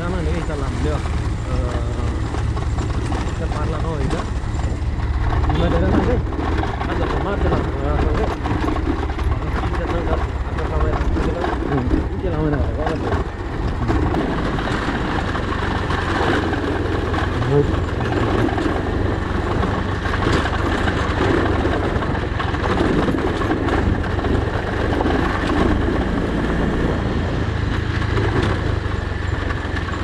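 Motorcycle running at low speed over a rough dirt track, a steady engine rumble heard from the rider's seat, with a person's voice going on over it throughout.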